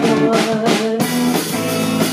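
Live rock band playing: electric guitar, electric bass and drum kit. Cymbal crashes wash over the first second and cut off abruptly about a second in, leaving held guitar and bass notes ringing.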